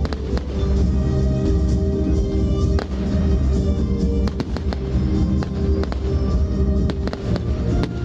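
Aerial firework shells bursting in a string of sharp bangs, with a quick cluster about halfway through, over continuous music.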